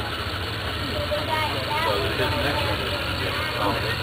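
Indistinct talk of people in the background over a steady low hum.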